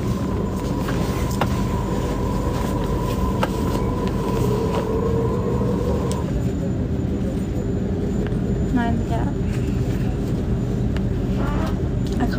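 Inside a Sydney double-deck train carriage: a steady low rumble and hum, with a thin steady whine that cuts off about halfway through. A couple of single clicks come early on.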